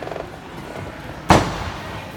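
A single loud, sharp bang about a second in that echoes briefly in the hall.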